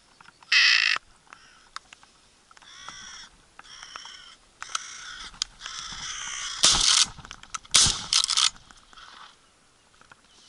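Carrion crows cawing in a run of harsh calls, the loudest near the start. Then two shotgun shots from a Winchester SXP pump-action come about a second apart, the loudest sounds here, as the birds come in over the decoys.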